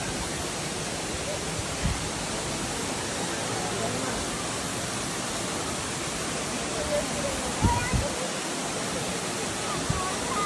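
Waterfall rushing steadily, a tall fall of water pouring into a rocky pool, with a few low thumps about two seconds in and near eight seconds.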